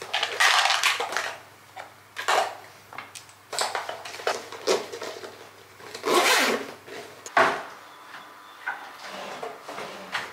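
The zip of a soft pink toiletry bag being pulled, with a long zipping stroke near the start and another about six seconds in, among shorter rustles and clatters of the bag and its contents being handled. A single sharp knock comes about seven and a half seconds in.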